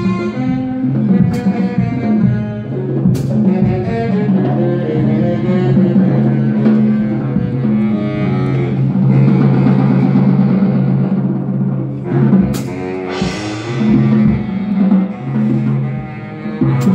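Live instrumental music played by a street-musician duo: a moving melodic line over held low notes, with a few sharp percussive strikes.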